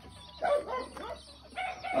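Chickens calling at the coop: short pitched calls about half a second in and again near the end.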